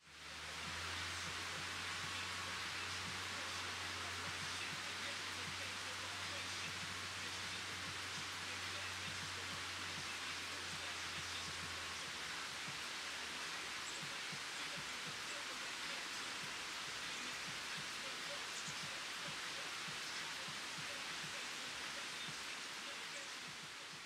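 A steady rushing noise, even and unbroken, with a low hum underneath that stops about halfway through.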